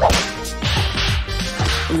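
Sharp swishing comedy sound effects with a sudden start, over background music with a low bass line.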